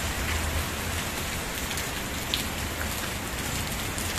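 Steady rain falling: an even hiss with scattered sharp drop ticks.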